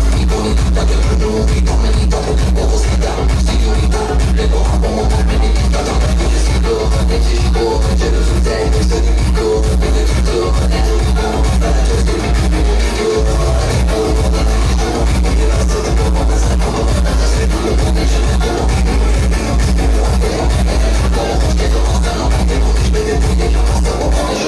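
Loud dance music played over a party loudspeaker, with a heavy, steady bass running throughout.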